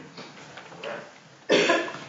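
A person coughs once, a short sudden cough about one and a half seconds in, over faint murmuring in the room.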